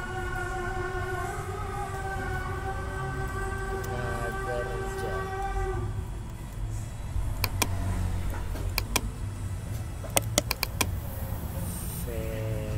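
A steady pitched drone with overtones holds for about the first six seconds and then stops, over a low rumble. In the second half come a handful of sharp computer mouse and keyboard clicks as text is edited.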